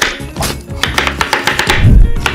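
Chef's knife cutting through a green bell pepper onto a wooden cutting board: several sharp chops, then a heavy low thump near the end, over background music.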